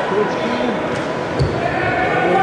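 Voices echoing in a large, nearly empty ice arena, with a single dull thump about a second and a half in.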